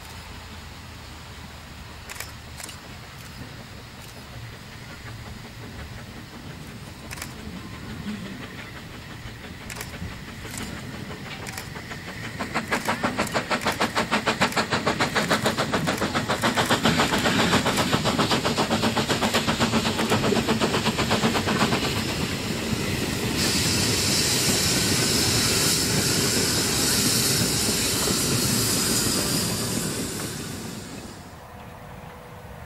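Narrow-gauge steam locomotive hauling a passenger train past: faint distant beats at first, then from about twelve seconds in a fast, even chuffing that grows louder as the engine comes by. In the last seconds a steady high hiss and running noise comes from the coaches and wagons following it.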